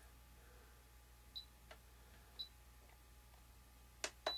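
Two short, high beeps about a second apart from a handheld RC transmitter as its menu is stepped through, with a faint click between them, over near silence.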